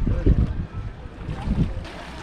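Wind gusting on the microphone beside calm sea water at a pebble shore, with low buffeting at the start and again about one and a half seconds in, over small waves lapping.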